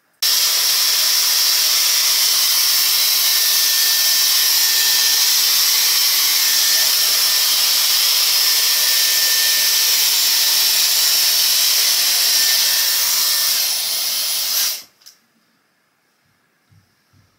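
Dyson Airwrap hot-air styler with its round brush attachment, blowing on wet hair: a steady rush of air with a faint thin whine. It switches on suddenly at the start and cuts off shortly before the end.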